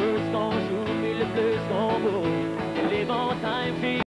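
Live band playing an upbeat country-style song: acoustic guitar strummed in a steady rhythm under a man's singing voice.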